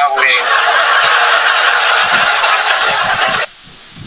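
A woman's loud, breathy laughter without clear voicing, coming through a phone's livestream audio. It cuts off suddenly about three and a half seconds in.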